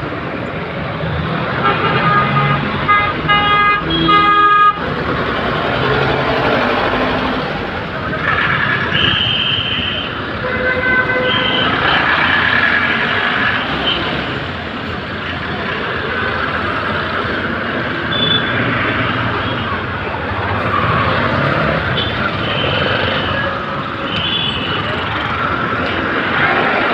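Busy road traffic of buses and cycle rickshaws with repeated vehicle horns. The loudest is a run of short horn blasts about two to five seconds in that cuts off suddenly, with more single toots later.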